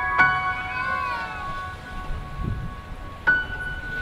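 Slow, calm background music: bell-like struck notes ring out just after the start and again about three seconds in. About a second in, a gliding tone bends downward in pitch.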